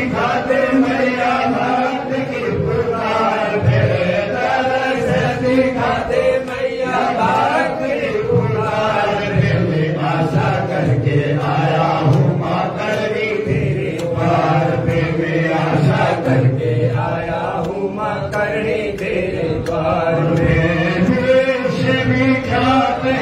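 Voices chanting Hindu mantras in a continuous recitation, the kind of chanting that accompanies a havan fire offering.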